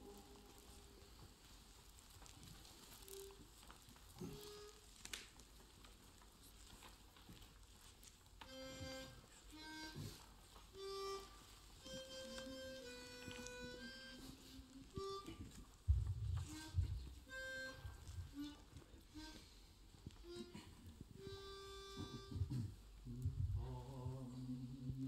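A quiet pause in a men's choir's singing, filled with faint, short hummed notes at scattered pitches, one after another, with a few soft low thuds past the middle of the pause.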